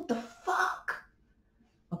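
A woman clearing her throat: two short, rough bursts within the first second, then quiet.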